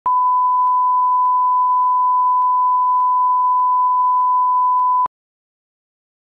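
Steady 1 kHz line-up test tone, the reference tone played with colour bars, sounding for about five seconds and then cutting off abruptly.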